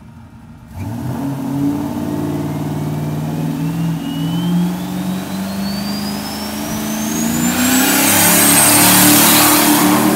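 Turbocharged 440 big-block V8 in an old Dodge pickup pulling away under throttle. The engine comes in suddenly about a second in, and a turbo whine climbs steadily in pitch over several seconds, with a rushing hiss building loudest near the end.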